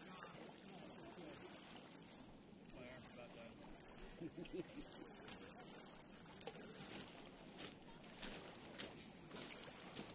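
Small waves lapping on a cobble lakeshore, a faint steady wash. Faint distant voices come in about four seconds in, and a few short sharp clicks sound near the end.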